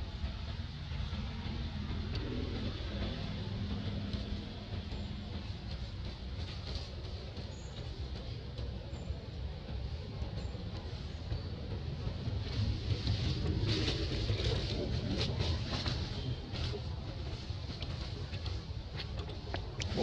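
Steady low outdoor rumble, with dry leaves crackling and rustling in the second half as macaques move over the leaf litter.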